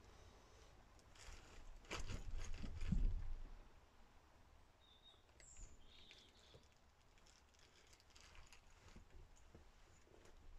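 Faint rustling and soft bumps of a person shifting his weight on upholstered cushions laid out as a bed, loudest about two to three seconds in.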